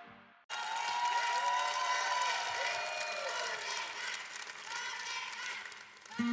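Studio audience applauding and cheering, a dense patter of clapping with voices calling out over it, starting abruptly about half a second in.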